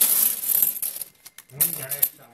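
A pile of Hungarian 200-forint coins clinking and sliding against each other as a hand spreads them out on paper, busiest in the first second, then a lull and a brief voice near the end.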